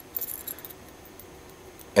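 A few faint, light metallic clinks near the start from a Dardevle Imp spoon's split ring and snap swivel as the lure is turned over in the fingers.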